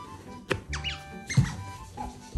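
Asian small-clawed otters giving short, high, falling squeaky chirps over background music, with two sharp knocks, the louder one about midway through.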